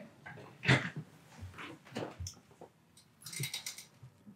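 Soft rustles and creaks of a person settling back onto a padded treatment table, a few separate small bumps, then a brief spell of fine rapid rustling near the end.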